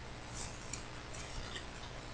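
Faint, scattered light clicks of trading cards being handled and shuffled in the hand, over low room hiss.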